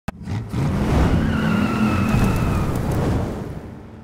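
Sound effect of a car engine running hard with tyres squealing, opening with a sharp click and fading out over the last second.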